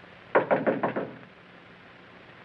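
Knuckles rapping on an office door: a quick run of about five knocks in under a second, starting a third of a second in.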